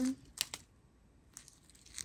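A small clear plastic bag of square resin diamond-painting drills crinkling as it is handled, with a short crackle just under half a second in and a fainter one later.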